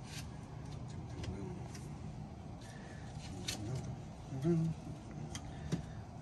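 A few scattered light clicks and knocks from hands working the PVC condensate drain-line fittings on an air handler, over a steady low hum, with a short murmur of voice about two-thirds of the way through.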